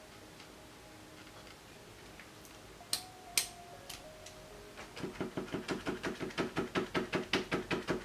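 Red paint marker tapped rapidly by hand, about five clicks a second over the last three seconds, flicking spatters of paint, after two sharper single clicks a couple of seconds earlier.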